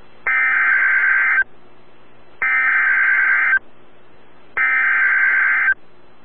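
Emergency Alert System (SAME) header data bursts as heard over weather radio: three bursts of buzzy digital warble, each just over a second long with about a second's gap, marking the start of a new warning broadcast. A steady hiss of radio static fills the gaps between the bursts.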